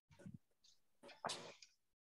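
Near silence, broken by a faint low bump early on and a short breathy puff a little past a second in: a person breathing out during exercise.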